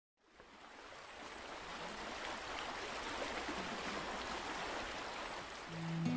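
A steady rush of running water, like a stream or surf, fades in over the first second or two and holds. Guitar music comes in just before the end.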